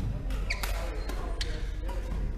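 Badminton rally in a sports hall: sharp racket hits on the shuttlecock and players' footsteps on the wooden court floor, with the hall's echo. The two sharpest hits come about half a second and a second and a half in.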